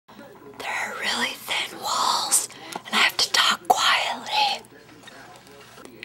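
A person whispering close to the microphone, stopping about two-thirds of the way in.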